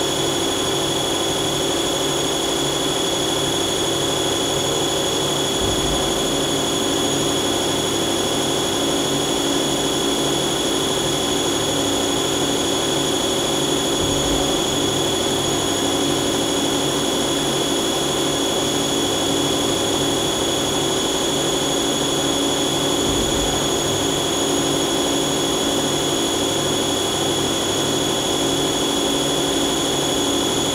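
Mazak CNC lathe running an automatic cycle, its spindle turning at about 2000 rpm with coolant on while the tool cuts a concave radius into the face of the part. The sound is a steady machine hum with a high whine, and a faint low bump about every nine seconds.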